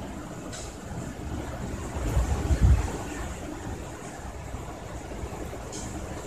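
Steady low background rumble that swells loud for about a second, around two seconds in, with a couple of faint small ticks.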